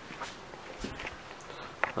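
Soft footsteps on an indoor floor, with a sharper tap near the end.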